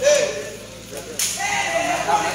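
Men's voices calling out around a sepak takraw court, with a sharp smack a little over a second in.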